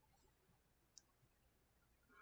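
Near silence: faint room tone, with one tiny, brief click about halfway through.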